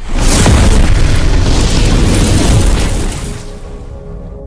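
Cinematic boom sound effect of a video intro: it hits suddenly after a split second of silence, rumbles loudly for about three seconds, then fades as a held musical tone comes in near the end.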